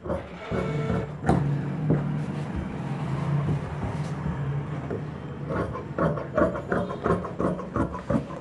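Tailor's scissors cutting through blouse fabric, a run of quick snips in the last few seconds. For most of the first half a steady low droning hum covers it.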